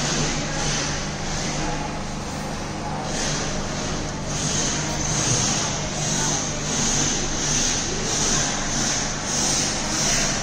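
Ammonia refrigeration plant running, with a Gram compressor feeding a frosted plate freezer: a steady machine hum under a hiss. From about halfway in, the hiss swells and fades about every three-quarters of a second.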